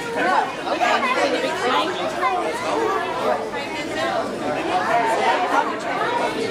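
Indistinct chatter: several voices talking over one another in a large hall.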